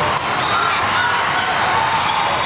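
Steady din of a busy indoor volleyball hall during a rally: many voices and court noise, with a few sharp knocks of the ball being played, two of them close together at the start.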